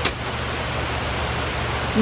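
Steady hiss of heavy rain, with a short click right at the start as the automatic umbrella is shut.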